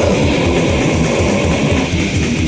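Death metal demo recording in an instrumental passage: distorted electric guitars and bass over fast, steady drumming.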